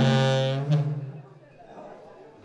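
A dholak stroke with a held harmonium chord that fades away over about a second, leaving a quieter pause.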